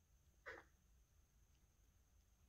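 Near silence: room tone, broken by one brief, faint sound about half a second in.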